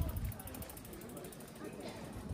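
Bicycle freewheel hub ticking as the bike is wheeled along by hand, over general street ambience with faint voices.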